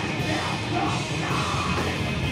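Heavy metal band playing live: electric guitars, bass guitar and drum kit, with the lead vocalist singing into a handheld microphone.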